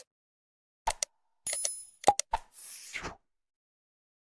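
Subscribe-button animation sound effects: two quick clicks, a short bell-like ding, three more clicks, then a brief whoosh that ends about three seconds in.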